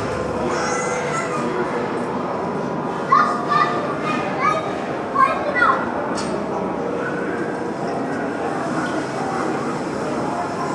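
Small motorbike engine running steadily as a boy rides it along a muddy track, played back through speakers in a large room. A few short high calls break in about three to six seconds in.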